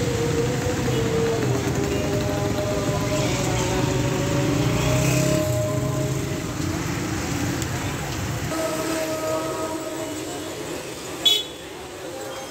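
Busy street ambience at a crowded tea stall: crowd chatter and traffic noise, with held tones that change pitch every few seconds. A single sharp clank near the end is the loudest sound.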